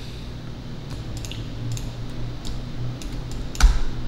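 Scattered clicks of a computer keyboard and mouse, about a dozen at uneven spacing, over a steady low hum, with one louder knock near the end.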